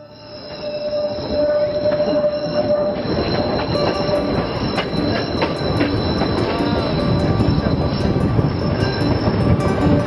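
Tren a las Nubes passenger train rolling, heard from aboard, its wheels squealing against the rails in steady high tones over the rumble and clatter of the carriage. The sound fades in during the first second.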